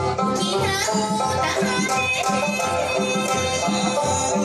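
Live Okinawan folk music: a sanshin played over a steady rhythmic beat, with a voice gliding between notes.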